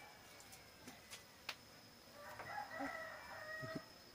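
A rooster crowing once, starting a little over two seconds in and lasting about a second and a half, with a few sharp clicks before it.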